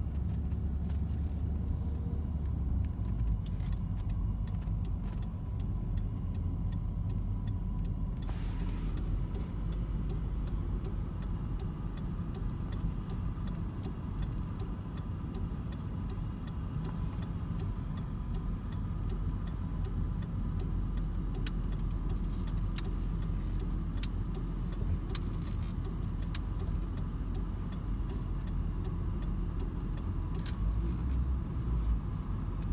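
Steady low rumble of a car's engine and tyres heard from inside the cabin while driving slowly, with a faint steady high tone over it.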